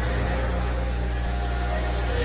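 A steady low electrical hum under indistinct crowd voices in a hall, with no clear music at this moment.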